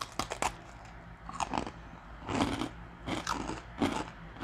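Crunchy baked cheese crisps being bitten and chewed: a quick run of sharp crunches at the start, then intermittent crunching chews.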